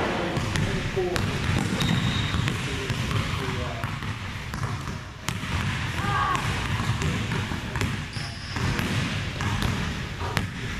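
Basketball being dribbled, bouncing repeatedly on a hardwood gym floor, with short squeaks of sneakers on the court a few times.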